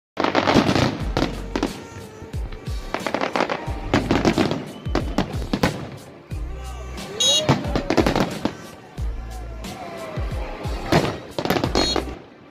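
Aerial fireworks bursting in quick succession: loud sharp bangs about every second, with crackling and low rumbling between them.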